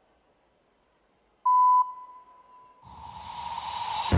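A single short electronic beep over the arena sound system, a steady tone that lingers faintly. A rising swell of hiss follows and builds into the opening of the gymnast's routine music.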